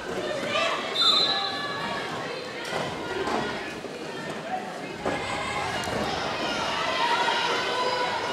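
Roller derby play echoing in a sports hall: skates rolling and thudding on the wooden floor amid the voices of players and spectators. A short high referee's whistle sounds about a second in.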